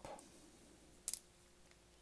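Green plastic cap being twisted off a small dropper bottle of glucose control solution: one sharp double click about a second in, then a few faint ticks.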